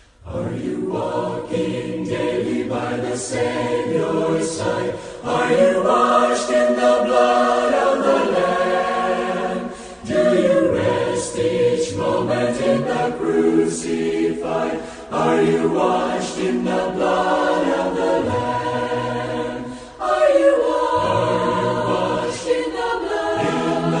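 Choir singing a gospel hymn in harmony. The phrases come in sung lines with short breaks about every five seconds, starting right after a brief hush.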